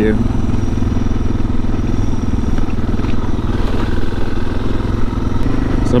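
Suzuki DR650's single-cylinder four-stroke engine running at a steady cruise, heard from on the bike.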